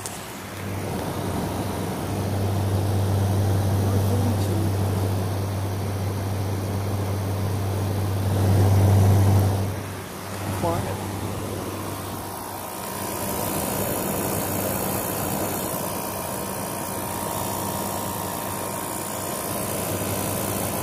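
GE R32 window air conditioner running in cool mode: its Gree compressor hums steadily under the rush of the condenser fan. The hum is loudest about eight to ten seconds in, then drops briefly.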